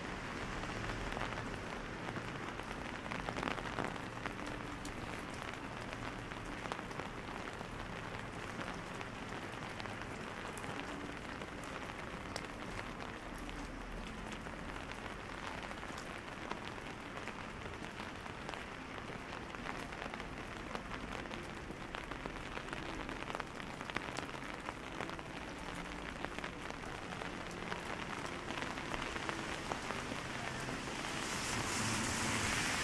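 Steady rain falling on wet city paving and street surfaces, an even hiss dotted with many small, sharp drop ticks.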